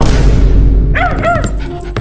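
Small dog barking twice in quick succession, short high yips about a second in, over loud film-score music that swells in suddenly with a deep low rumble at the start.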